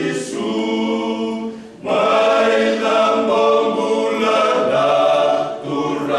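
Small men's choir singing unaccompanied in several-part harmony, long held chords with a short breath pause between phrases about two seconds in.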